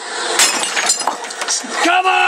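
A sudden crash like something breaking, followed over the next half-second by a scatter of sharp clinks and rattles.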